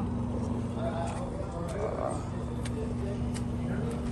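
Gas station fuel pump running as gasoline is dispensed through the nozzle into a car's tank: a steady hum over a low rumble, with a few faint ticks.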